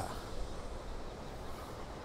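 Quiet, steady outdoor background noise with a low rumble and no distinct event.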